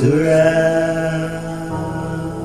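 A voice chanting or singing slowly over music, sliding up into one long held note at the start and sustaining it.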